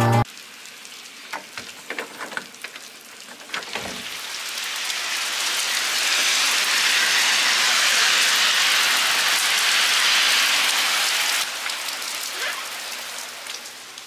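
Steady rain falling on pavement and grass, with a few scattered drip ticks. It swells to a loud hiss a few seconds in, then drops back and eases off toward the end.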